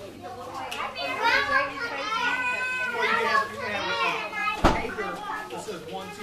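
Young children's high-pitched excited voices and squeals while they play, with one sharp knock about three-quarters of the way through.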